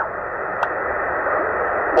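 Steady hiss and static from a Tecsun PL-990x shortwave receiver's speaker, tuned to 7140 kHz lower sideband on the 40-metre amateur band, with no voice coming through. The hiss sounds thin and muffled, cut off above the narrow sideband passband.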